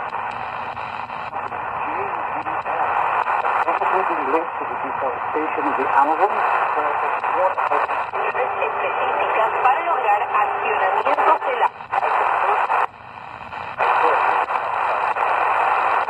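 A shortwave voice broadcast through the small speaker of an XHData D219 portable radio, the voice half-buried in hiss and distortion. It cuts out briefly twice near the end. It sounds a bit overloaded, even with the telescopic antenna almost fully down.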